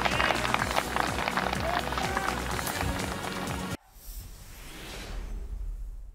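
A golf gallery applauding and cheering, with music, cut off abruptly about four seconds in. A quieter burst of outro music follows, swells and fades out.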